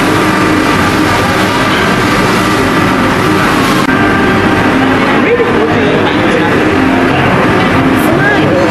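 Busy restaurant din: many indistinct voices talking at once over a steady hum. The high hiss drops away suddenly about halfway through.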